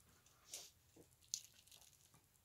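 Near silence with a few faint, brief handling noises from knife sheaths being held and moved: a soft rustle about half a second in, then two light ticks around a second in.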